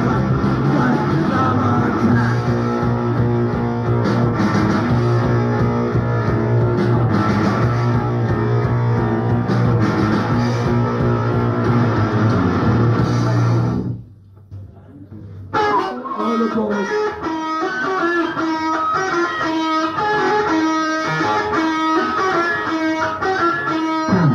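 Punk rock band playing live, guitar, bass and drums together, heard on a raw tape recording. About 14 seconds in the music breaks off, and after a gap of about a second and a half an electric guitar riff starts up with the band.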